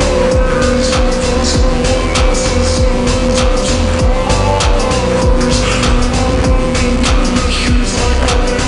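Slowed-down rap song with heavy reverb: a steady beat over deep bass and a sustained synth tone.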